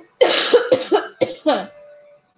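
A woman coughing hard, a run of about five coughs in quick succession, the first the longest and harshest.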